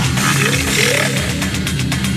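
Loud grindcore music, dense and distorted, with a few short gliding pitches in the first half and fast, even drum hits from about halfway through.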